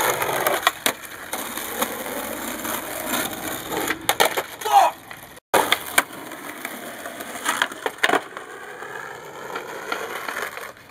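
Skateboard wheels rolling on rough asphalt, with sharp wooden clacks of the board popping, hitting the concrete curb and landing several times. A short squeak about halfway.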